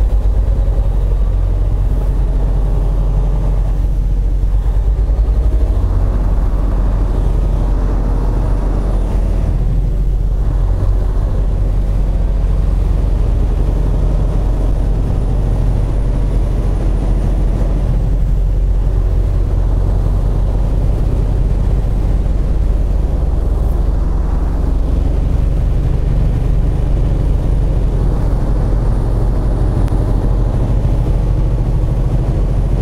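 Semi truck's diesel engine and road noise, a steady low drone while the truck drives along. The engine note is stronger in the first ten seconds or so as it pulls away from a roundabout, then settles to an even cruise.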